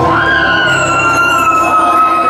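Live rock band ending a song: the bass drops out and a single high note is held, bending up at first and then slowly sagging in pitch.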